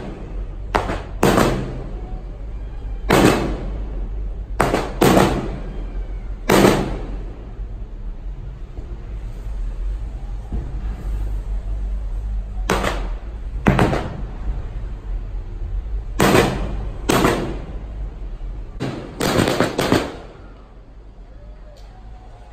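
Aerial fireworks shells bursting, a string of sharp bangs each with an echoing tail, several coming in quick pairs and triplets, with a lull of several seconds in the middle and the last burst about two seconds before the end. A steady low rumble runs underneath.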